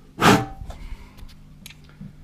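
A single short, loud puff of air blown into a freshly drilled and tapped hole in a cast-iron mill casting to clear the chips out of it.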